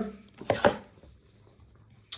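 Handling of a fabric dust bag holding a leather card holder: two brief, sharp rustling knocks about half a second in.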